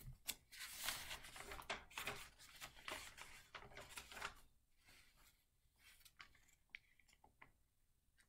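Faint rustling and shuffling of paper notes for about the first four and a half seconds, then a few light clicks and taps.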